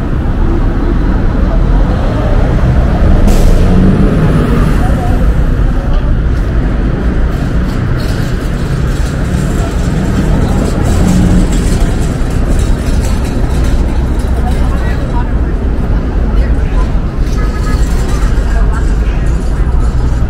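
City street sound at a busy intersection: road traffic of cars and trucks passing and idling, with the voices of people waiting nearby.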